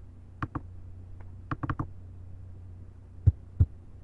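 Computer mouse clicking: a few short, sharp clicks, some in quick pairs, over a steady low electrical hum. Near the end come two louder low thumps about a third of a second apart.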